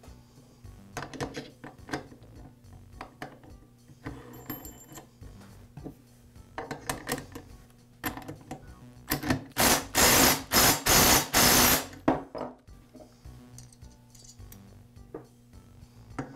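A cordless DeWalt impact driver hammers in about six short bursts, a little over halfway through, tightening a chainsaw's clutch onto the crankshaft through a clutch tool. Before and after, light clicks and clinks of metal parts being handled.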